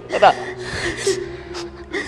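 A person's voice: a short spoken word, then a breathy gasp lasting about a second.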